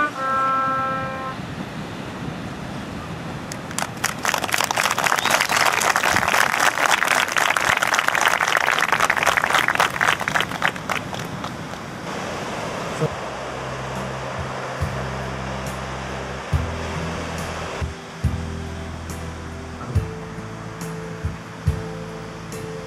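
A trumpet phrase ends about a second in. From about four seconds a crowd applauds for some seven seconds. From about thirteen seconds soft music with low held notes comes in.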